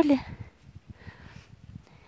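A gloved hand pressing down loose garden soil: faint, dull, scattered pats and crumbly rustles, after a woman's word ends at the very start.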